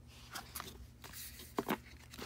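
Hands handling a CD album's cardboard box and photobook: faint paper and cardboard rustling with a few light taps, the sharpest about a second and a half in.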